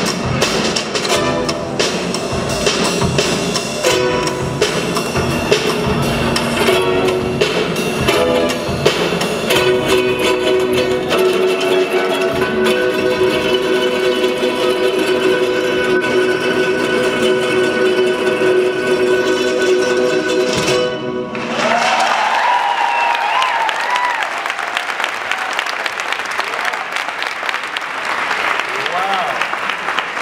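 A ukulele ensemble with upright bass plays a song that ends abruptly about two-thirds of the way in, followed by a crowd applauding and cheering.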